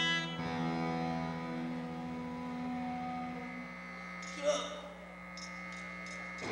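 Electric guitar chord held and slowly fading as the song ends, with a brief voice about four and a half seconds in.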